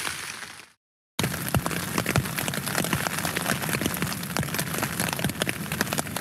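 Rain falling on a tent's fabric, heard from inside the tent: a dense steady hiss packed with many separate drop taps. A fading sound drops to a moment of silence just under a second in, and the rain starts about a second in.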